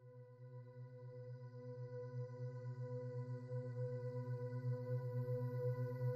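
A binaural-beat tone bed: a steady electronic drone of several held tones, the deepest the strongest, fading in and slowly growing louder, with a throbbing pulse several times a second.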